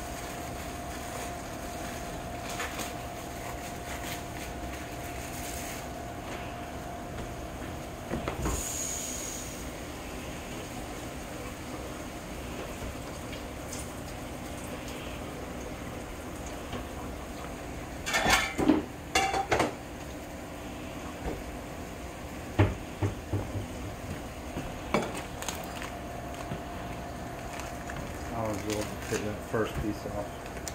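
Kitchen sounds: a low steady hum and the faint sizzle of ground beef frying in a skillet, with bursts of dishes and utensils clattering a little past halfway and again a few seconds later.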